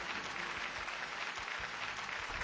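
Audience applause: a dense, steady patter of many hands clapping.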